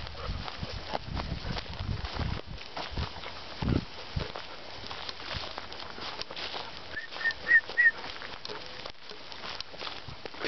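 Two Newfoundland dogs moving about on dry grass: scattered rustles and footfalls, with a dull thump a few seconds in. A little past two-thirds through come four quick high chirps in a row, about a quarter second apart, which are the loudest sounds.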